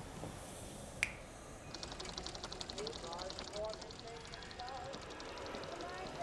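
A single sharp finger snap about a second in. Then a faint, fast, evenly pulsing high buzz fades in, with faint wavering tones beneath it.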